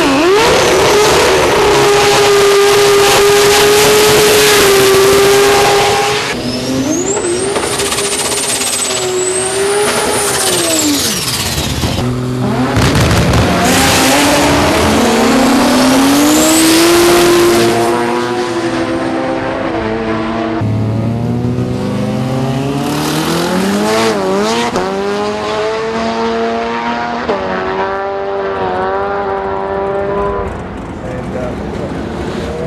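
Drag-racing car engines revving hard, held at high revs for several seconds at a time, with the revs climbing and dropping. The sound changes abruptly a few times as it switches from one car to the next.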